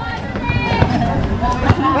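People talking and calling out in the background on an outdoor basketball court, with a few short knocks.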